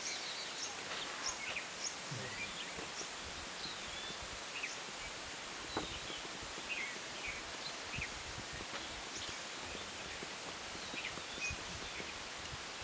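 Forest ambience: many short, high bird chirps and twitters scattered throughout, over a steady hiss, with a single brief tick about six seconds in.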